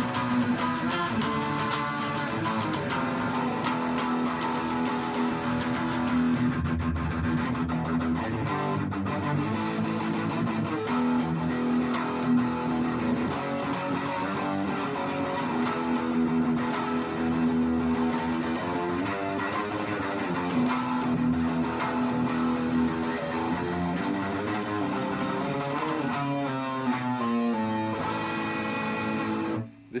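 Black Swift electric guitar played through an amp's distortion on the bridge humbucker: a continuous lead line with held notes that waver in pitch, its pickup giving a dark, woolly tone. The playing stops suddenly just before the end.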